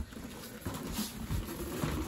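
Cardboard packaging scraping and rustling, with a few soft knocks, as the plastic-wrapped RC car in its cardboard tray is pulled from its box.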